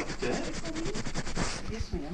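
Handling noise: the camera's microphone rubbing and scraping against shirt fabric as the camera is moved, a fast run of scratchy strokes that thins out near the end.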